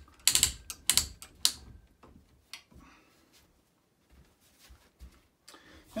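Pawl ratchet on the lower roller of a long-arm quilting frame clicking as it is released to loosen the quilt: a quick run of sharp clicks in the first second and a half, then a few fainter ones.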